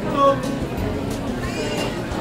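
Crowd chatter in a busy indoor market, with a short, loud, high-pitched voice sound about a quarter second in and a faint rising tone near the end.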